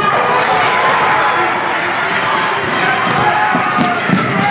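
Live basketball game sound: the ball bouncing on a hardwood gym floor, with indistinct voices of players and spectators.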